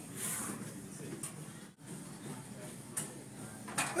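Faint room noise with a low murmur of voices and a few light clicks and knocks, spaced irregularly.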